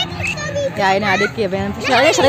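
Children's voices, high-pitched, talking and exclaiming over one another.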